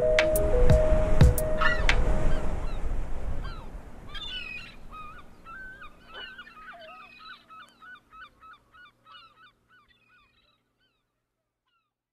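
The song's final bars, with a beat, fade out over the first few seconds. Then a flock of gulls calls, with many short repeated cries overlapping, and the calls die away a couple of seconds before the end.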